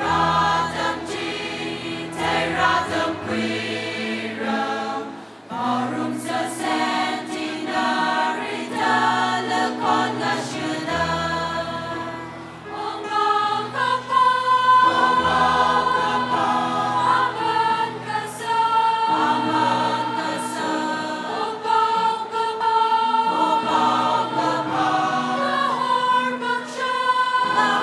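A choir singing Christian music over continuous accompaniment, with held notes and deep bass notes under the voices.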